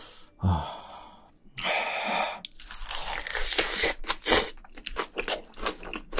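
Close-miked chewing of a mouthful of fried rice wrapped in roasted seaweed. From about two and a half seconds in there is a quick, irregular run of sharp crunchy crackles.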